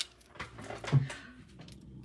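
Faint rustling and small clicks of paper and adhesive backing being handled and peeled, with a short low sound about a second in.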